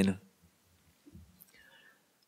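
A man's reading voice finishes a word just in, then a pause of near-silence with only a faint breath in the second half.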